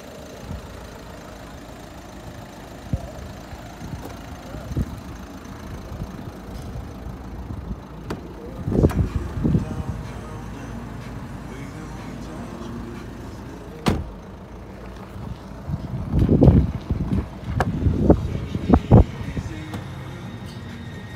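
Handling noise of moving around and into a car: scattered knocks and thumps over a low steady hum, a single sharp click about two-thirds of the way through, and a run of louder knocks near the end.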